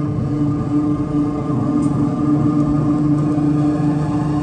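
Post-punk band playing live through a venue PA, electric guitars and bass holding steady, droning low notes with no clear drum hits standing out.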